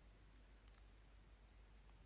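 Near silence, with a few faint soft ticks from a foam sponge dabbing paint onto bubble wrap.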